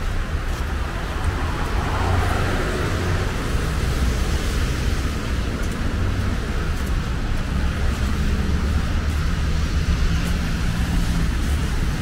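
Steady city street traffic: cars running and their tyres on a wet road, a continuous low rumble with an even hiss over it.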